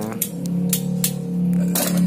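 A man's voice holding one steady, drawn-out vowel for about a second and a half, like a long hesitation sound. A few sharp light clicks sound over it.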